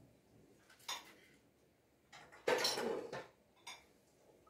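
Metal cookware being handled: a sharp clink about a second in, a louder clatter of pots lasting most of a second past the middle, and another clink near the end.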